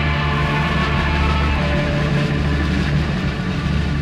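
Early-1970s British progressive rock recording playing: dense sustained chords over a steady, heavy low bass.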